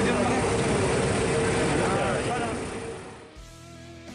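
Voices calling out over steady boat-engine noise on open water. About three seconds in this cuts off and guitar music starts.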